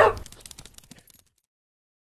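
A short logo sound effect: a sudden hit that fades out over about a second through a rapid stutter of faint ticks.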